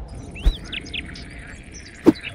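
Birdsong ambience of short chirps, with a single thump about half a second in as a suitcase is set down in a car's boot.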